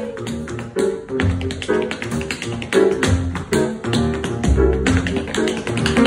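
Tap shoes striking a wooden tap board in quick, rhythmic runs of sharp clicks, over live jazz accompaniment of piano and upright bass.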